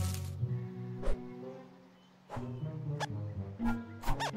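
Orchestral film score with a few short cartoon creature squeaks and sharp hits over it. The music fades out a little before the middle and comes back a moment later.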